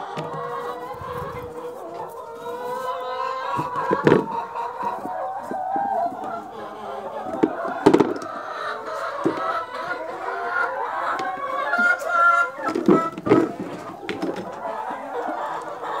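Chickens clucking and calling over one another without pause, with a few sharp knocks about four, eight and thirteen seconds in.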